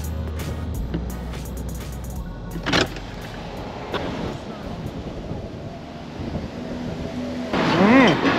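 Road and engine noise heard from inside a moving car, with music playing over it. There is a short loud swish about three seconds in, and the sound swells near the end.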